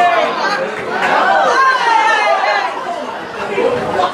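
Several people talking over one another: spectators chatting at the pitchside.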